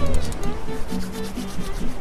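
Vending machine working after a button press: a rapid scraping rattle for about a second, then thinning out, over background music.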